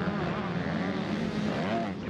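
MX2 motocross bikes racing, their engines revving with the pitch rising and falling as the riders work the throttle.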